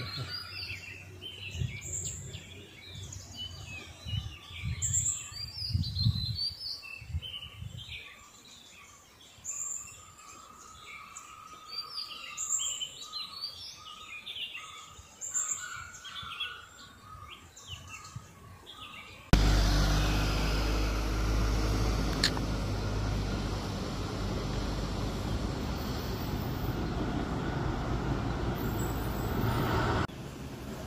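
Forest birds chirping and calling, with a few low thumps under them. About two-thirds of the way through the sound cuts suddenly to a louder, steady rushing noise with a deep rumble.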